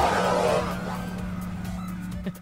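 Tail of a segment intro sting: the music and a rushing, whoosh-like effect fade out over the first second or so, leaving a steady low hum.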